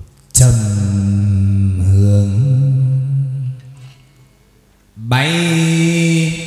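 Chầu văn (hát văn) ritual singing: a voice holding long, drawn-out notes with no clear words, one long phrase, a short pause, then a second held note that slides up into place about five seconds in.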